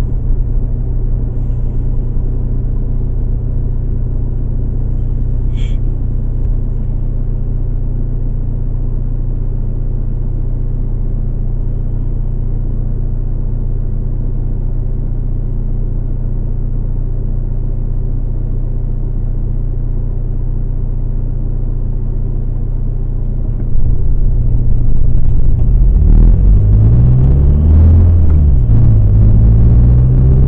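Car engine idling steadily while the car stands still, heard from inside the cabin. Near the end it gets louder as the car pulls away, the engine pitch rising, dropping back at a gear change and rising again.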